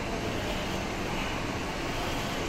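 Steady urban background noise, mostly road traffic running, without a break or a distinct event.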